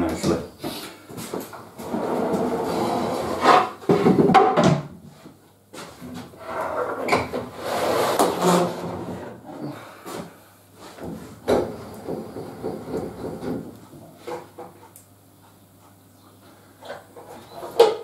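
Wooden boards being slid and set down on a table saw's sliding table: irregular scrapes and knocks of wood on wood and metal.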